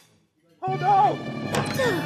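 Cartoon soundtrack. After a brief silence, a wordless vocal exclamation sounds over music, with a thud about one and a half seconds in.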